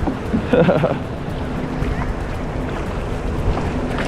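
Wind buffeting the microphone and sea water sloshing around a kayak, as a rough, uneven rush.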